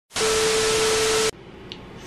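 Television static sound effect used as an editing transition: a loud burst of hiss with a steady tone inside it, lasting about a second and cutting off suddenly.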